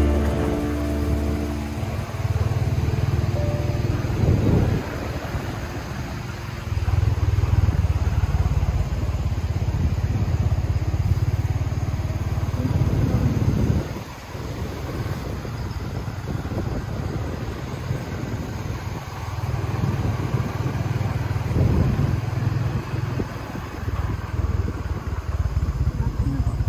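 Wind buffeting the microphone in gusts, a low rumble rising and falling every few seconds, over the steady rush of a flooded, fast-flowing river.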